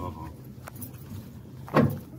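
Riding inside a Piaggio Ape E-City FX electric three-wheeler: steady road noise with light rattling from the metal body, and a single click about two-thirds of a second in. A short loud voice sound comes near the end.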